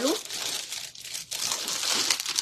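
Clear plastic garment packaging crinkling and rustling as it is handled, irregular and with brief pauses.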